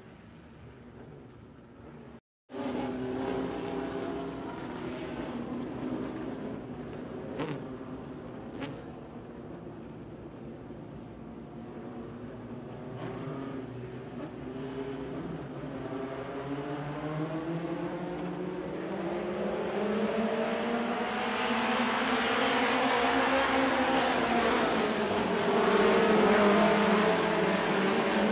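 A pack of dirt-track mini stock race cars running together, several engines droning at once with their notes rising and falling. The sound grows louder as the field comes closer and is loudest near the end. The audio drops out briefly about two seconds in.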